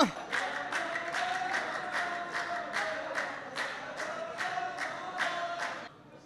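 A group of men chant together in unison, held on a steady note, over steady rhythmic hand clapping at about two and a half claps a second; the claps are the loudest part. The clapping and chanting stop just before the end.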